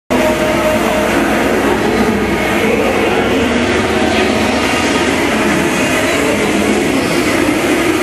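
Loud, steady din of a large, busy exhibition hall: crowd and sound-system noise blended into one continuous wash, with no single voice or event standing out.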